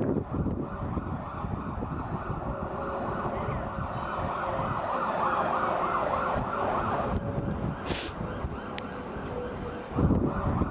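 An emergency-vehicle siren sounding over steady outdoor background noise, with a short hiss about eight seconds in.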